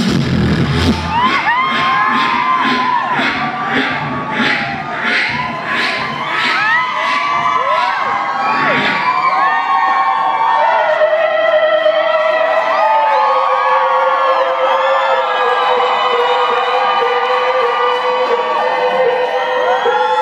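A beatboxer performing into a handheld microphone: a vocal beat of about two hits a second with chirping, sliding pitched sounds over it, giving way after about nine seconds to long steady held notes. An audience cheers along.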